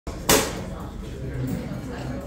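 A single sharp knock about a third of a second in, with a brief ringing tail, then a low murmur of voices in the room.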